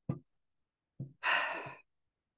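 A woman sighing: a brief voiced sound at the start, then, about a second in, a short voiced onset that opens into a breathy exhale of about half a second.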